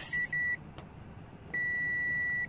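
Digital multimeter's continuity beeper sounding as its probes bridge a connector on a TV's LED backlight strip: two short beeps, then a steady beep of about a second starting about a second and a half in. The beep signals that the circuit through the connector is closed and conducting.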